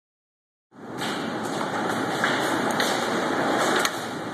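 Large hailstones pelting window glass in a heavy storm: a dense, steady roar with sharp clicks of single stones striking, starting abruptly just under a second in.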